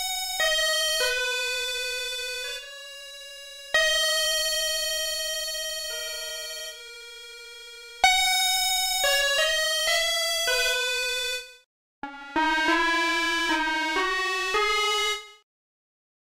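Dead Duck Software DDX10 FM synthesizer plug-in playing its Fuzzy E Piano preset: single electric-piano notes, each struck and then fading, several with a wavering pitch. Near the end comes a quicker run of notes that stops sharply.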